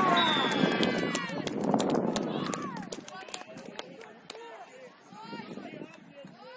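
Sideline spectators shouting and cheering, with hand claps. The shouting dies down about halfway through into quieter voices.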